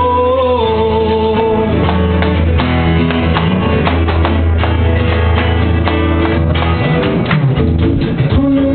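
Acoustic guitar strummed in a steady rhythm, with a sung note held over about the first second and a half.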